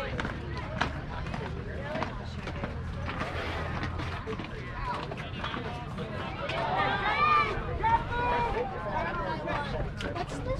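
Indistinct voices of people talking and calling at a distance, loudest near the end, over a low steady rumble.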